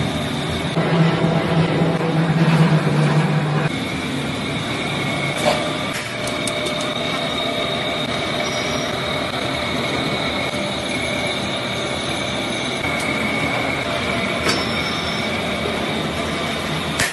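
Dough sheeting machine in a noodle factory running, its steel rollers and gears giving a steady mechanical rattle with a high whine over it. A low hum sounds for the first few seconds, and there are a few sharp knocks.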